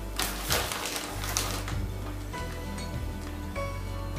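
Background music with a steady bass line. Near the start, a short burst of crinkling and rattling from the plastic bag of chocolate chips lasts a little over a second.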